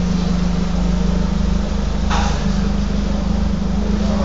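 Car engine idling steadily with an even low hum, with a brief rush of noise about two seconds in.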